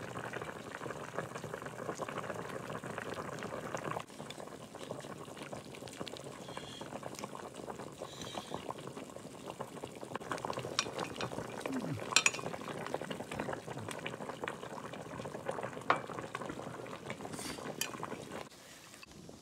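A pot of broth bubbling at a steady boil, with scattered sharp clicks of chopsticks against the bowl, the sharpest about twelve and sixteen seconds in.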